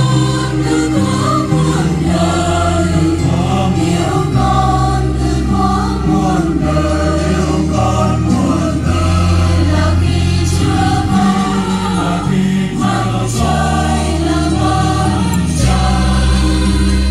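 A choir sings a Vietnamese Catholic hymn over instrumental accompaniment, with held bass notes that change every couple of seconds.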